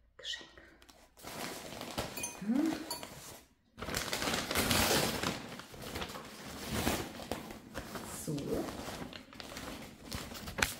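Brown kraft-paper wrapping rustling and crinkling as it is handled and pulled off a potted plant, in two long stretches with a short pause in between, loudest a few seconds in.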